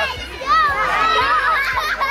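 Many children's voices talking and calling out over one another, a lively young audience reacting.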